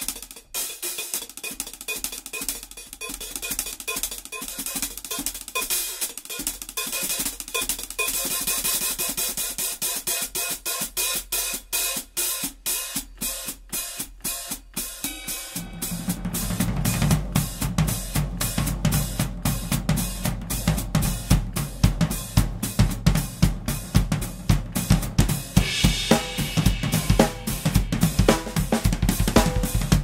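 Acoustic drum kit played solo with sticks: the first half is lighter cymbal, hi-hat and snare work, then about halfway through the low drums come in and the playing gets louder and fuller.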